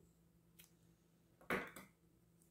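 Scissors snipping through cotton crochet twine: a short, sharp double click about one and a half seconds in, with a faint tick before it.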